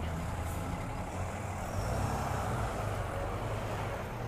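Refrigerated box truck driving past at close range, its diesel engine running with a low rumble that swells slightly about two seconds in.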